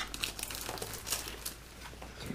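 Packaging crinkling and rustling as it is handled and opened, with a scatter of small clicks.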